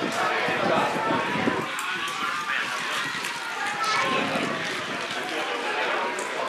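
Open-air sound at a small football ground during play: distant, indistinct shouts and calls from players and spectators over a steady background noise, with scattered faint knocks.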